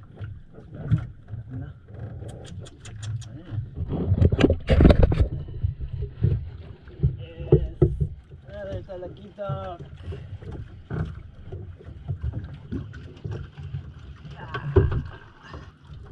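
Small fishing boat riding on the water at sea, with a steady low rumble and water sounds. There is a quick run of sharp clicks near the start and a loud thump or splash about five seconds in.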